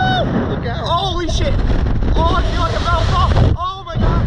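Wind rushing over the ride-mounted camera's microphone as the slingshot capsule swings through the air, with the riders' shouts and whoops over it. The wind noise drops out briefly near the end.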